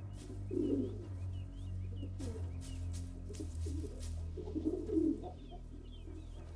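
Bird calls: low cooing three times, about half a second in, near two seconds and around five seconds, with faint high chirps between, over a soft background music bed.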